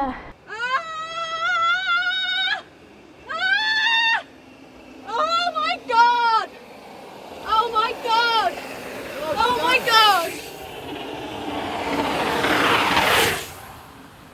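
A series of long, high-pitched whooping calls echo off concrete walls. Then a mountain bike rushes down the concrete ramp toward the camera, its tyre and wind noise building to a peak and cutting off just before the end.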